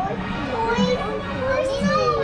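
A toddler's voice babbling and vocalizing in drawn-out sounds that slide up and down in pitch.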